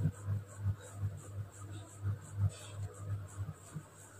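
Marker pen writing on a whiteboard: a run of short, irregular strokes as words are written out by hand.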